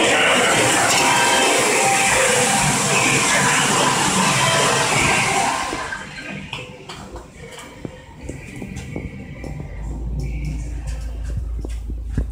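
A loud, steady din of background noise with music in it fills the open elevator car, then drops away sharply about six seconds in. What follows is quieter, with small clicks as the car's floor button is pressed. From about ten seconds in, a steady low hum sets in as the Hitachi rope-traction elevator runs.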